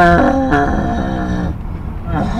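A man's loud, drawn-out wordless cry, held for about a second and a half and dropping in pitch shortly after it starts, heard inside a moving car's cabin over the steady low rumble of road and engine noise.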